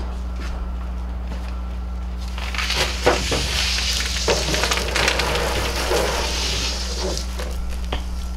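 Garden hose spray hitting a charred, fire-damaged microwave: a hiss of water with splattering clicks that starts about two seconds in and eases off near the end. A steady low hum runs underneath.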